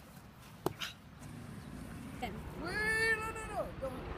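A boy's long strained yell of effort while wrestling, rising and then falling in pitch, about three seconds in. A single sharp knock comes earlier.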